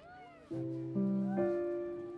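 Keyboard with a piano sound playing the instrumental bars of a ballad: three notes or chords struck about half a second apart, each held and slowly fading. Over them come short high calls that rise and fall in pitch.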